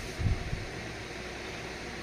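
Steady, even background noise with a hiss-like, fan-like quality, and a brief low thump shortly after the start.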